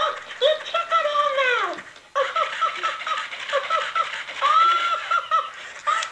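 Tickle Me Elmo plush doll laughing through its small built-in speaker after its button is pressed: a high, thin giggle in repeated bursts, with a brief pause about two seconds in.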